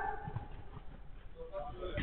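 Faint, indistinct shouts of players during a five-a-side football game, with a couple of low thuds about a quarter to half a second in.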